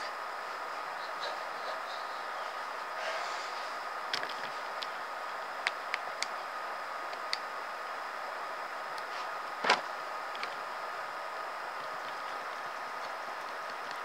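Steady background hiss with a faint constant tone, broken by a few light clicks and one louder knock about ten seconds in: a hand handling the phone or camera close to the microphone.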